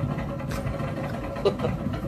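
Steady low rumble of a roller-coaster ride video playing through a TV's speakers, with a single sharp knock about one and a half seconds in.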